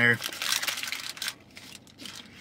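Paper burger wrapper crinkling as it is peeled back from a cheeseburger by hand: a run of quick rustles that dies down after about a second.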